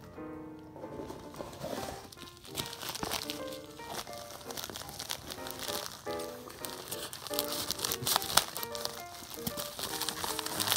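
Background music with a padded mailing envelope crinkling and rustling as it is handled; the crinkling picks up about three seconds in.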